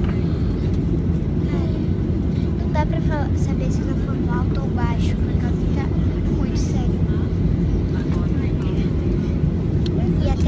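Steady low rumble of airliner cabin noise, engines and airflow as heard from a passenger seat, with faint voices in the background.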